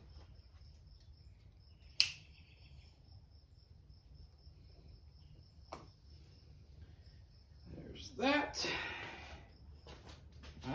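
Handling of a pocket knife and twine: one sharp click about two seconds in and a fainter one near six seconds, over a faint steady high-pitched whine and low hum. A man's voice sounds briefly near the end, without clear words.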